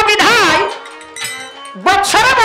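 Male folk singer's voice through a microphone: a loud, drawn-out sung phrase with wide swoops in pitch ends about half a second in, and another starts near the end. Between them a faint held note sounds.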